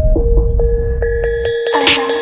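Electronic backing music: a low throbbing bass under a held steady note, with short synth notes coming in about halfway through.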